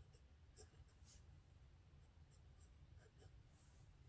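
Faint scratching of a pen on notebook paper as Chinese characters are written stroke by stroke, in short separate strokes over a low steady hum.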